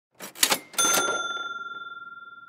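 A short mechanical clatter of a few clicks, then a single bright bell ding that rings on and slowly fades: a cash-register-style sound effect.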